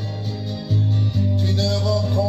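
Instrumental backing music of a slow pop ballad with sustained bass notes, the bass moving to a new note about two thirds of a second in and again just after a second.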